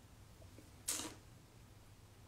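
A person sipping whiskey from a tasting glass: one short airy sound about a second in, over quiet room tone.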